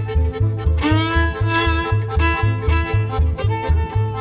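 Romanian lăutari folk band music led by a solo violin over a steady bass beat. About a second in, the fiddle slides up into a high held note.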